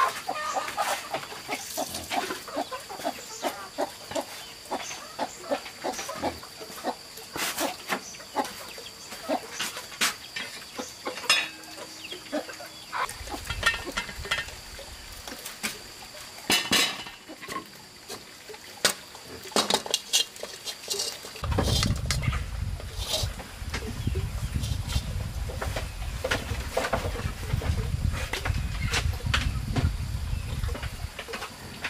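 Chickens clucking, with scattered clicks and knocks of sticks being handled and a faint steady high drone. A low rumble sets in about two-thirds of the way through.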